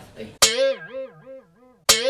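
A short guitar jingle: a sharp plucked attack about half a second in, followed by a wavering melody whose pitch swings up and down about four times a second as it fades. The same sting starts again near the end.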